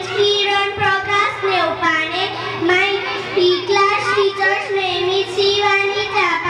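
A young boy singing into a handheld microphone, holding long notes in a high child's voice with short breaks between phrases.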